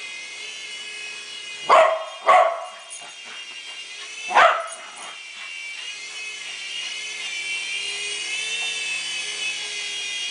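West Highland White Terrier barking three times: two barks in quick succession about two seconds in, and one more about halfway. Under them runs the steady high whine of a small electric remote-control toy helicopter, a WL Toys V388 Hornet, whose pitch wavers in the second half.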